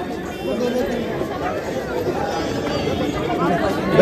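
Chatter of several people talking at once, fainter than a close voice, with no single speaker in front.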